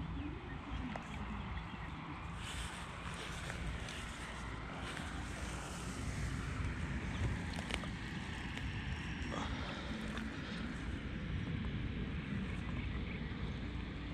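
Steady low rumble of wind on the microphone outdoors, with a few faint clicks scattered through it.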